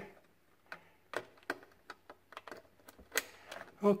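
Scattered light plastic clicks and taps as wire-harness connectors and their wires are pressed and tucked into place on a refrigerator's electronic control board.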